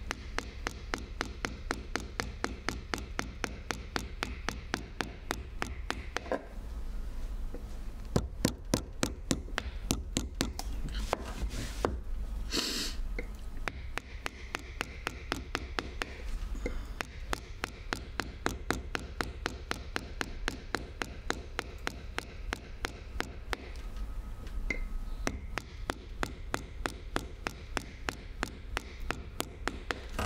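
Mallet striking a chisel in steady runs of about four blows a second, clearing waste wood from a woodblock, with a few short pauses between runs.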